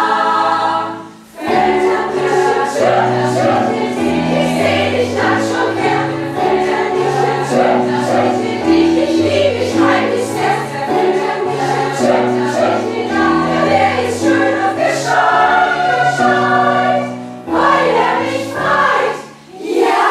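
Mixed choir, mostly women's voices, singing full sustained chords over a moving low bass line. The singing breaks off briefly about a second in and again just before the end.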